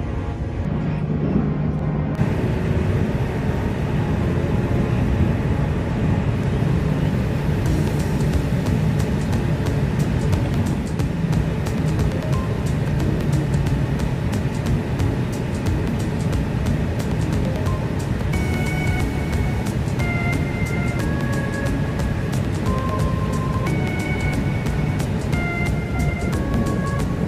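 Music playing over the steady low rumble of a Shinkansen train in motion. From about two-thirds of the way in, a run of short, clear notes at changing pitches.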